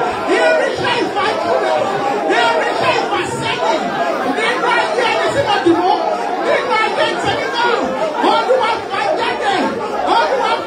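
A congregation praying aloud all at once: many overlapping voices, with no one voice standing out.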